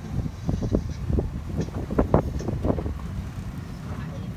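Low steady rumble of a safari vehicle, with wind buffeting the microphone and many short knocks and rattles scattered throughout.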